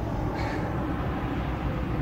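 A steady low rumble of outdoor background noise, with no distinct event in it.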